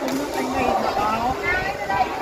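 Onlookers' voices talking and chattering, echoing in a large badminton hall between rallies.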